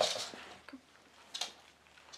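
Rustling and scuffling as a pet dog is gathered up onto a person's lap: a burst of rustling at the start that fades over about half a second, then a short scuffle about one and a half seconds in.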